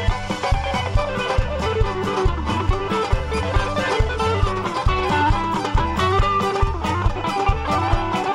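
Live folk band playing an instrumental passage: a violin melody over a plucked mandolin and a steady drum beat.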